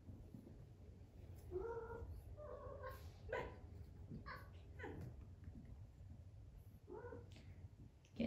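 Maine Coon cat meowing faintly: a few short calls, one rising in pitch, with a few soft taps between them.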